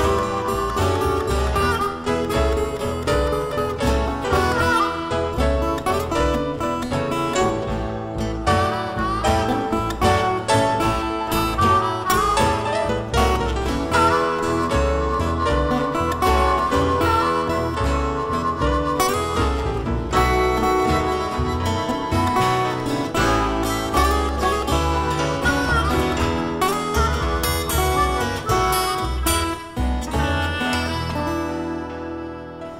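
Electric blues band playing an instrumental passage without vocals, a guitar lead with bent, gliding notes over bass and drums.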